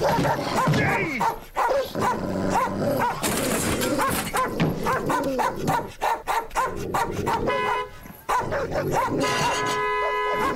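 A dog barking aggressively, many short barks in quick succession.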